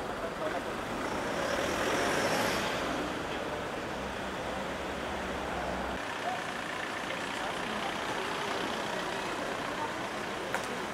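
Street traffic: vehicle engines and tyres on the road, swelling as one passes about two seconds in, with a low rumble that cuts off about six seconds in.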